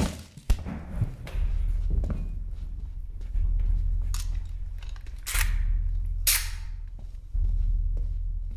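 Soundtrack music: a deep booming bass pulse that restarts about every two seconds, like a slow timpani beat. Over it are a sharp hit about half a second in and two short, sharp bursts of noise past the middle.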